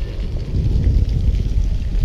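Wind buffeting the camera's microphone: a loud, irregular low rumble that rises and falls in gusts.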